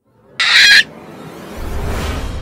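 Cartoon sound effects: a short, loud, high-pitched squawk about half a second in, then a low rumbling snore from a large sleeping cartoon lion building near the end.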